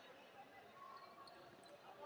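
Near silence: faint distant voices and room tone, with a few light ticks about a second in.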